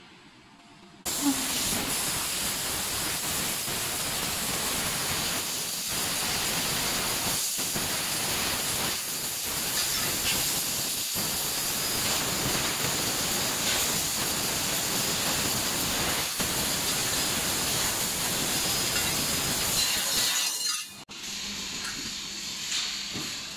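A 3000 W fiber laser cutter cutting metal tube: a loud, steady hiss of the assist gas jet blowing through the cut. It starts about a second in, has a few brief drop-outs, and stops just before the end.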